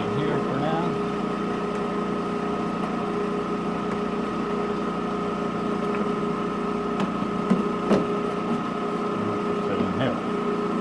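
Balzers HLT-160 dry helium leak detector running, its Edwards ESDP-30 dry scroll pump giving a steady hum of several fixed tones. A couple of light clicks come about seven and eight seconds in as the remote control unit is handled.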